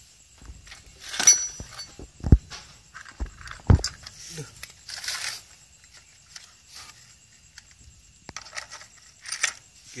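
Metal parts and tools being handled at an open motorcycle engine crankcase: a bright ringing metallic clink about a second in, two dull knocks around two and four seconds, and scattered rustling and scraping.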